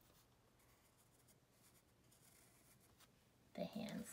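Very faint pencil scratching on paper as lines are drawn.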